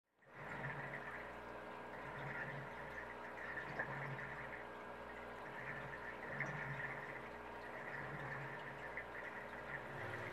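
Aquarium equipment running in a room: a steady low hum with faint water noise that swells and fades every second or so.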